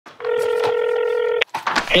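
A telephone ringing: one steady electronic ring tone, about a second long, that cuts off sharply. A man's voice comes over the phone just after it.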